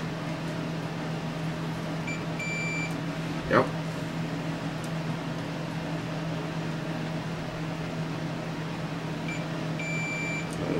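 Multimeter continuity tester beeping as its probes bridge a component on a VCR drum motor's circuit board: a short chirp then a beep of about half a second, twice, a couple of seconds in and again near the end, signalling that the path has continuity. A steady low hum runs underneath.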